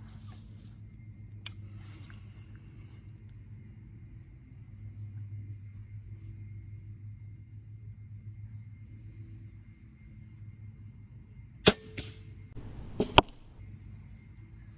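A crossbow fires with one sharp, loud snap about twelve seconds in, followed by a second sharp knock about a second and a half later. A distant leaf blower's steady low drone runs underneath, and a single small click comes about a second and a half in.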